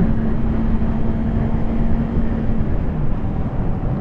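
Suzuki GSX-R600 sportbike cruising at a steady moderate speed: its engine hum under heavy wind and road rumble on the microphone. The steady engine note fades about two-thirds of the way through.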